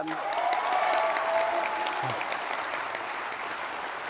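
Audience applauding, the clapping swelling at first and then slowly fading, with a voice calling out over it in the first second or so.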